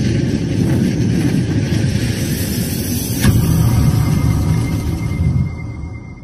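Cinematic logo-reveal sound effect: a loud, dense rumble with a sharp hit about three seconds in, then a thin high ringing tone as it fades out near the end.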